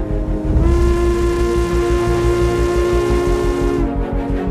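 A steamship's steam whistle gives one long, steady blast of about three seconds, starting about half a second in with a slight upward bend in pitch and cutting off near the end.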